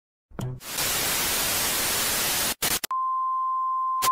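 Television test-pattern sound effect: a short blip, then about two seconds of loud static hiss, two brief crackles, and a steady high test-tone beep of the kind that accompanies colour bars.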